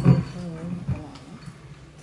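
A man's voice in the first second, a drawn-out sound with no clear words, fading to quiet room tone.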